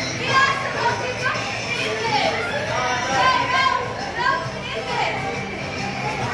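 A group of young children calling out and shrieking excitedly together, with music playing in the background.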